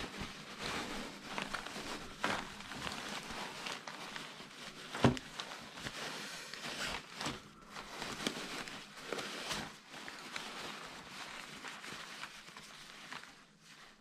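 Rustling and crinkling of hammock fabric as it is pulled out of its stuff sack and unfolded by hand, with one louder thump about five seconds in.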